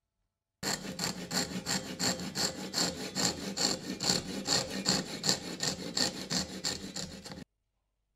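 Fine-toothed handsaw cutting a slot down into the end of a curly teak hammer handle, in quick, even strokes at about two and a half a second. The sawing starts and stops abruptly.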